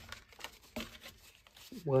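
Blank white card stock rustling and sliding on a tabletop as sheets are handled and set down, with a couple of soft taps; a woman's voice starts near the end.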